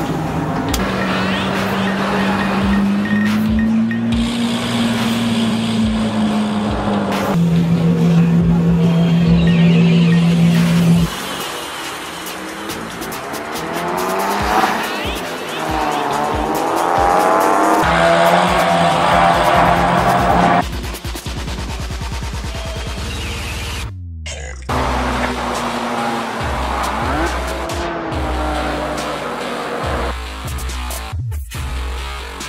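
Race car engine running and revving on track, with tyre squeal, under background music. The sound changes abruptly several times.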